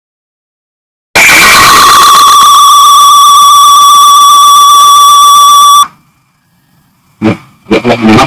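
A very loud, steady high electronic tone with overtones, starting suddenly about a second in at full level and cutting off abruptly after nearly five seconds.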